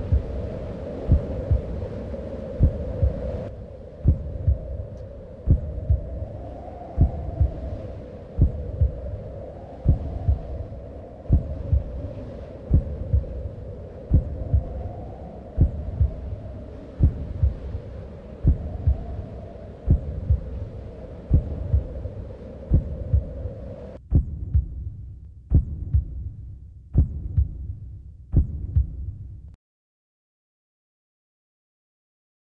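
A slow, steady pulse of low thuds like a heartbeat, one about every second and a half, over a wavering hum. The hum drops out about 24 seconds in. The thudding cuts off suddenly near the end.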